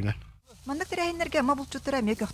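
Speech: one voice breaks off about half a second in and, after a brief gap, a different, higher-pitched voice starts talking.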